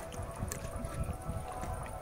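A lion lapping and gulping water from a plastic bottle held to its mouth, a run of soft wet slaps about three a second.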